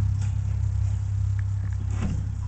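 Steady low rumble of wind on the microphone, with faint rustling from hands moving through the fur lining of a rabbit nest.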